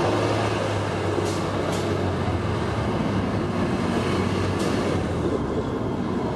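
City bus engine running as the bus passes at the curb: a steady low rumble with a hum, and a few brief high hisses.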